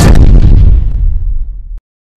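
A deep boom sound effect, like an explosion, that fades out over about a second and a half and then cuts off abruptly into silence.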